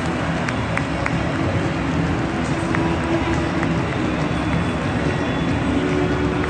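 Football stadium crowd: a steady din of many voices at once, with scattered single claps.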